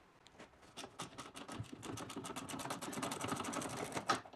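Ratchet wrench clicking as a 12 mm bolt holding the golf cart seat back to its bracket is backed out: a rapid, even run of clicks, about ten a second, that picks up about a second in.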